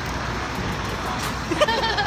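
Coach bus moving past, its engine giving a steady low rumble over general traffic noise.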